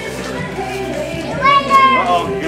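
Background music with singing, and a toddler's high-pitched squeal about one and a half seconds in, held for about half a second.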